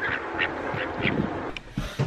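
Ducks quacking: several short quacks in quick succession, then they stop about a second and a half in.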